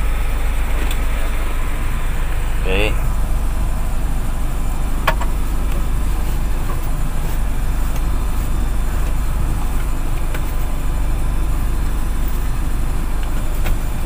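Van engine idling steadily, heard from inside the cab as a low, even rumble, with one sharp click about five seconds in.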